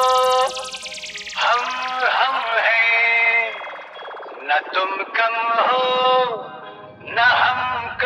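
DJ remix intro: chopped, electronically processed vocal phrases in short bursts with gaps. A falling sweep effect runs through the first few seconds.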